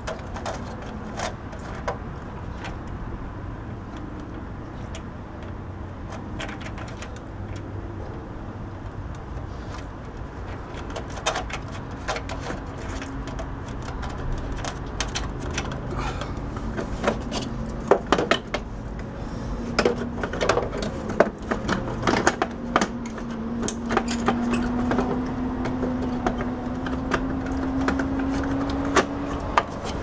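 Hands handling the plastic rear cover of a television: scattered clicks and knocks of plastic, busiest around the middle. In the last third a steady low hum comes in and slowly rises in pitch.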